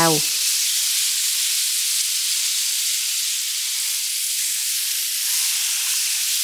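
Seasoned pork spare ribs sizzling steadily in hot oil in a wok over high heat, searing so the marinade caramelizes onto the outside of the ribs.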